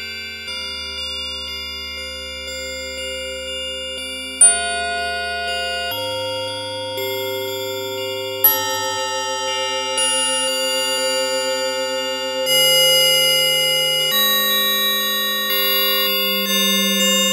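Bell-like synthesizer sound played from a MIDI keyboard in a slow improvisation: sustained chords that change every few seconds, with a sharp, bright high note struck twice, about four and eight seconds in. The chords grow louder near the end.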